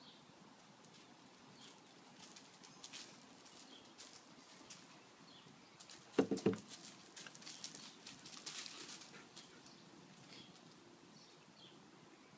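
Paws scuffling and crunching on loose gravel as two dogs, an Australian Shepherd and a German Shepherd, tussle in play, with a short loud burst about halfway through as they clash. Faint bird chirps in the background.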